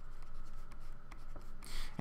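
Stylus scratching and ticking on a drawing tablet as words are handwritten, faint, over a low steady hum.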